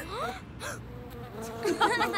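Cartoon bee buzzing sound effect with a wavering, up-and-down pitch near the end, after a couple of short rising swoops at the start.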